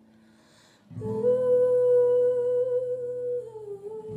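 A woman hums one long held note over a strummed acoustic guitar chord, both coming in about a second in after a quick breath. The note slips slightly lower and fades near the end.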